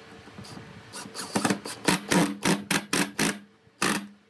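Cordless drill running in about ten short trigger bursts, starting about a second in, as its bit goes into a pine leg; a last burst comes near the end.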